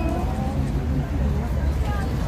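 Outdoor city-street ambience: a steady low rumble, with a passerby's voice trailing off in the first half second.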